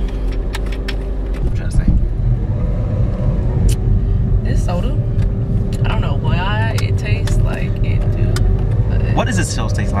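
A car heard from inside the cabin: a continuous low rumble with a steady hum over it, the rumble changing character about a second and a half in.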